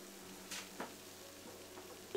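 Chopped vegetables frying faintly in a nonstick pan on an induction cooktop, with a steady low hum and two light clicks a little under a second in.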